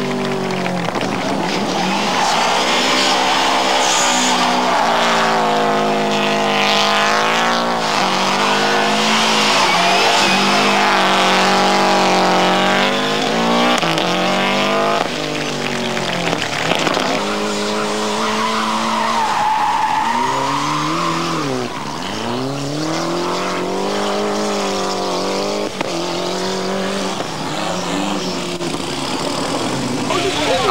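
A rally car's engine being driven hard through a slalom, revving up and dropping back over and over with the gear changes and lifts. Its tyres squeal as it slides on the loose surface.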